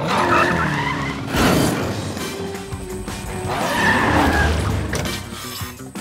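Cartoon car sound effects: the Cat-Car racing with skidding tyres, surging loudest about a second and a half in and again near the middle, over action background music.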